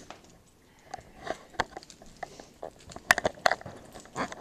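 Irregular light clicks and small knocks as a body camera is picked up off the floor and handled, sharpest a little after three seconds in.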